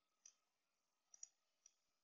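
Four faint, sharp clicks of computer input at a desk: one early, a quick pair just over a second in, and another shortly after, over near-silent room tone.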